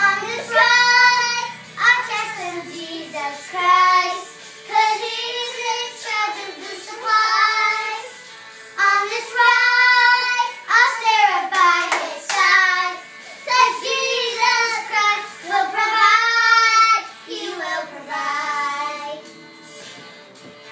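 Girls singing a children's song in phrases of a second or two, with a few sharp hand claps around the middle.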